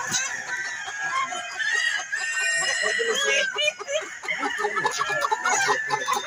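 A flock of hens and roosters clucking steadily, with a rooster crowing once in the middle.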